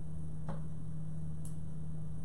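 Steady low electrical hum, with two faint clicks about a second apart.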